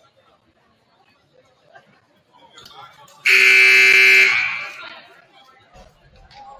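Gym scoreboard buzzer sounding once for about a second, with a strong echo trailing off in the gym; it signals the end of a timeout as the players return to the court.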